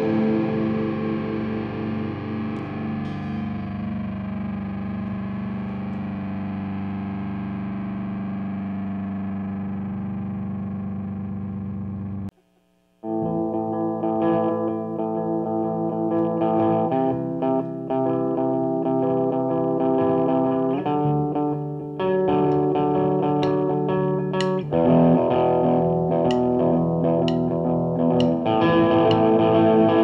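Black/death metal music: a distorted electric guitar chord rings out and slowly fades, then breaks off into a brief silence about twelve seconds in. The next track opens with distorted guitar chords changing every second or two.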